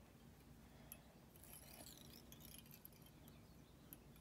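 Near silence: faint scratchy handling of a wire whip-finish tool and fine tying thread, with a small tick about a second in and another near the end.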